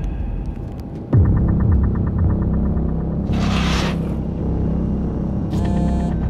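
Trailer sound design: a deep rumbling drone that swells with a sudden low hit about a second in. A fast ticking pulse runs over it for the next couple of seconds, and a short whoosh of noise comes past the middle.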